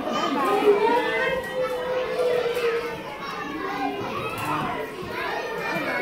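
Babies and toddlers babbling and calling out, overlapping with other voices in a large room, with one long drawn-out vocal near the start.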